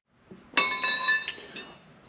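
Metal clinking and ringing: a sharp clink about half a second in that rings on and fades, then two lighter clinks near the end.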